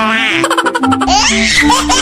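Laughter, a quick run of giggling, over background music.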